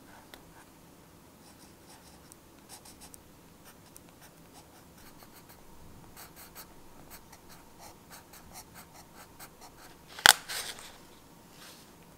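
Pencil writing on journal paper: a run of short, quick scratching strokes, followed near the end by one loud, sharp click and a couple of softer ones.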